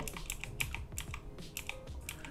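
Computer keyboard keys tapped, a string of light, irregular clicks.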